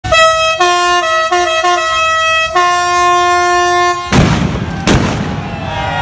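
Air horn blaring in steady notes that shift pitch several times, for about four seconds. It then cuts to a loud burst of broad noise with a single sharp crack about a second later.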